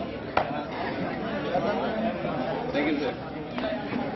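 Chatter of many people talking at once, with a single sharp click about half a second in.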